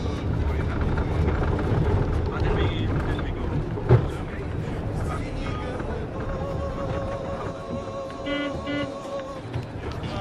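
Low, steady rumble of a vehicle creeping along, heard from inside the cabin, with a sharp knock about four seconds in. A long steady tone sounds through the second half.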